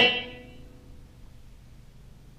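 An electric guitar note played through a Boss ME-70 multi-effects pedal fades out within about half a second, leaving only a faint steady hum. The delay is set to its long 1000–6000 ms range, so no repeat comes back yet.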